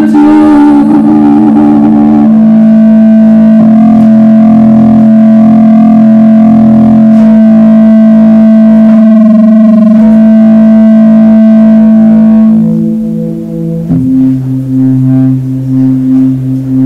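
Experimental live music: held droning tones from an electric guitar through effects, with synthesizer-like sustained pitches. The chord of held notes shifts about two seconds in and again near the end, and the volume dips just before that last change.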